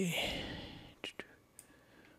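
A soft breathy exhale trailing off the end of a spoken word and fading within the first second, then two quick computer mouse clicks a little after a second in.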